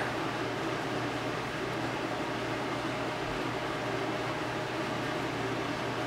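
Steady background noise: a low hum under an even hiss, without change.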